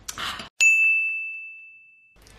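A short swish, then about half a second in a single bright bell-like ding that rings on as one clear tone and fades away over about a second and a half: a transition sound effect for a title card.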